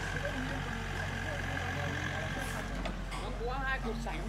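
Doosan excavator's diesel engine running steadily, with a higher steady whine over it that cuts off about two-thirds of the way in.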